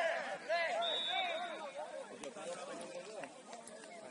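Several distant, indistinct shouts from players on a football pitch during the first two seconds or so, with a brief high steady tone about a second in, like a referee's whistle.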